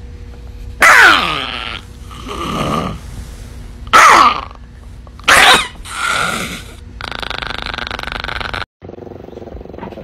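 Small dog snarling and growling over a rubber bone toy in its guard, with three loud outbursts that drop sharply in pitch, about a second in, at four seconds and at five and a half seconds, softer growls between them, and a steady rasping growl that cuts off suddenly near the end.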